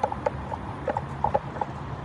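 Several light, irregular taps over a low rumbling background.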